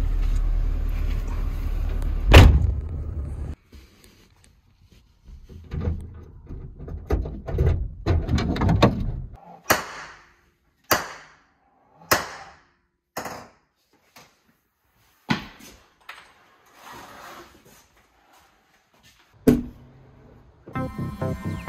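Honda Civic's cabin with the car's steady low rumble, and a car door slamming shut about two seconds in. After a sudden cut come quieter shuffling sounds and a row of sharp single knocks, about a second apart.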